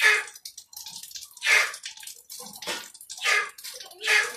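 A man drinking a blended herbal drink from a small glass: four short slurping sips, about one a second.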